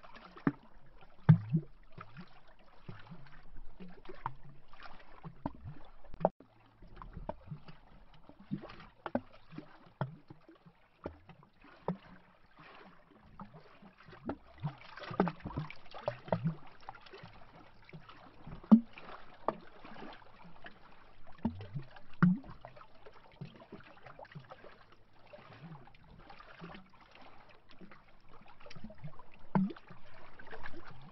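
Small lake waves lapping against a tree trunk, making irregular hollow glubs and little splashes, with a few louder glugs among them.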